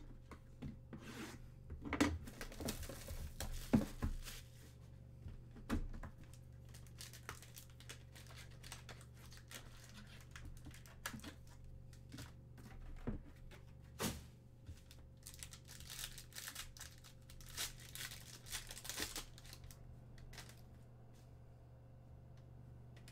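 Trading cards and their pack packaging being handled: irregular crinkling, rustling and sharp slides of cards against one another, with a few louder rustles near the start, about two-thirds through and near the end, over a steady low electrical hum.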